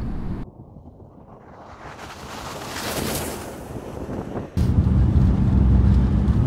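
A hiss of noise swells to a peak about halfway through and fades. Near the end it is cut off suddenly by the loud, steady low drone of the Ford Ranger Raptor's 2.0 diesel engine and tyres, heard from inside the cabin while driving on icy snow.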